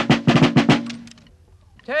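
A line of flintlock muskets brought to make ready: a ragged rattle of sharp clicks as the locks are cocked and the pieces handled, dying away about a second in.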